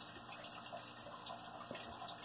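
Quiet room tone: a faint, steady hiss with no clear distinct event.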